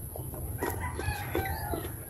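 A rooster crowing once, a call of a little over a second starting about half a second in, over the chewing of a bite of unripe green mango.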